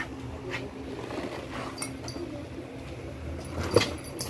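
A western saddle being swung up onto a horse's back, landing with one sharp thump near the end. Faint handling clicks of leather and tack come before it, over a low steady background hum.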